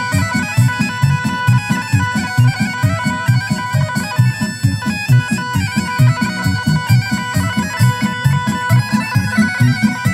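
Amplified folk band playing kolo dance music: a held lead melody over a fast, even bass beat.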